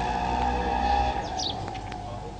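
A few short, falling bird chirps in the second half, over a steady background hum.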